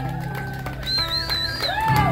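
Live band holding out a long final chord at the end of a song, a low bass note sustained underneath. A high wavering note comes in about a second in.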